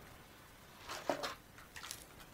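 Clear rigid plastic plant packaging being handled: short crackles and rustles about a second in and again near the end.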